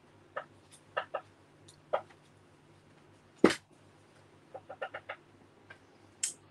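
Light clicks and taps of paper craft pieces being handled on a craft table, with one sharp, louder knock about three and a half seconds in and a quick run of small ticks about a second later.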